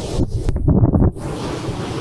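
Wind buffeting the phone's microphone, with a stronger gust about half a second in, over the wash of surf breaking on the beach.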